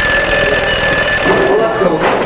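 Classroom bell ringing with a steady high tone, stopping shortly before the end; students' voices come in about halfway through.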